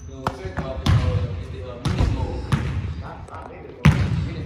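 A basketball bouncing on a hardwood gym floor: four separate bounces, roughly a second apart, echoing in the large hall.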